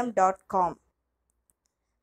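A person's voice speaking briefly, then cutting off to dead silence, with one faint tick about one and a half seconds in.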